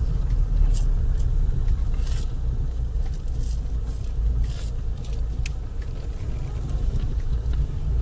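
Car driving slowly, heard from inside the cabin: a steady low rumble of engine and road, with a few faint short higher-pitched ticks.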